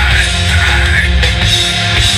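Live nu-metal band playing loud: distorted electric guitars, bass guitar and a drum kit.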